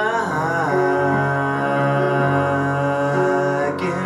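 A man singing one long held note over sustained piano chords; the note wavers in its first second, then holds steady.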